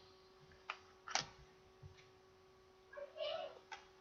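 Faint handling of trading cards, with a few soft clicks, then a short faint pitched call about three seconds in.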